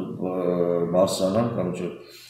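A man speaking in Armenian, in a fairly even, drawn-out voice, breaking off near the end.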